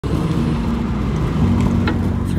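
Road and engine noise inside a moving car's cabin, a steady low rumble.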